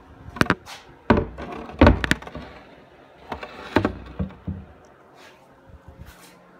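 Wooden knocks and thuds from the cabinet of an upright piano being opened to expose its hammers and strings. There are several sharp knocks in the first half, the loudest about two seconds in, then quieter rustling.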